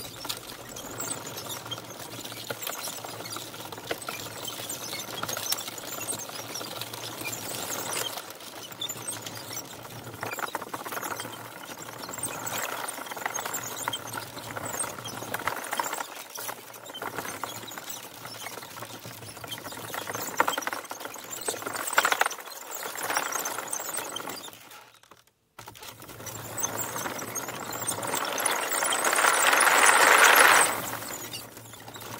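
Homebuilt wooden tank driving over grass: a continuous rattling clatter of its wooden track links over the sprockets and road wheels, with the faint hum of its electric drive motors. The sound cuts out briefly about three-quarters of the way through and grows louder near the end as the tank comes close.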